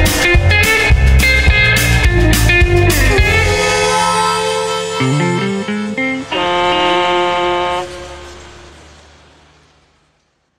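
The closing bars of a blues-rock song with electric guitar: the full band with drums plays to a stop about three and a half seconds in, a low bass run follows, and a final chord is struck about six seconds in and rings out, fading away.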